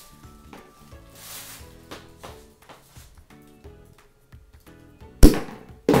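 A rubber bung blowing out of a bottle with one sharp, loud pop near the end, forced out by the gas pressure built up from baking powder reacting with vinegar inside.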